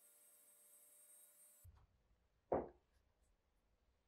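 Small rotary tool with a sanding drum running at a faint, steady whine against the edge of a leather case, cutting off abruptly about a second and a half in. About a second later comes a single short knock, the loudest sound.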